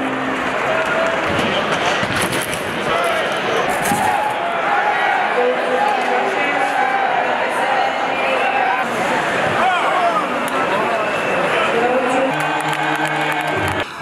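Ice hockey arena sound during play: a crowd of spectators chanting and shouting steadily, with occasional sharp knocks of sticks and puck. A held low tone comes in near the end.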